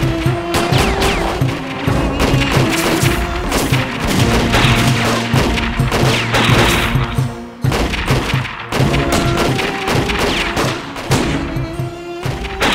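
Music under gunfire and explosions, with many sharp shots spread throughout.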